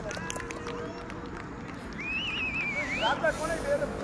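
Players' voices calling across an open cricket field, with a high, wavering call about two seconds in and more shouts near the end, over steady outdoor background noise.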